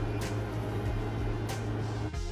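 A steady low hum in a small room, with two faint clicks from a makeup wipe being handled.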